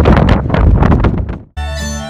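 Strong gusts of wind buffeting the microphone, loud and rough. About one and a half seconds in it cuts off suddenly and music with steady held notes begins.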